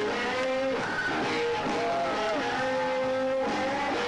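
Slow blues lead on electric guitar, played live: sustained notes bent up in pitch, held, and let back down in slow arcs, then a long held note near the end, over a steady band backing.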